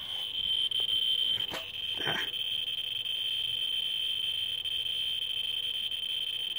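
Ludlum Model 14C Geiger counter's audio, driven by the 44-7 alpha-beta-gamma end-window probe over uranium ore, counting so fast that the clicks merge into a steady high-pitched buzz, about 10,000 counts a minute. A couple of short handling knocks in the first half.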